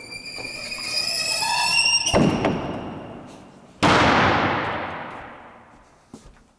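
Rear ramp door of an enclosed aluminum cargo trailer being lowered: a squeal from the ramp's hinges as it swings down, a thump about two seconds in, then a loud bang as the ramp lands on the concrete floor near four seconds in, dying away over the next two seconds.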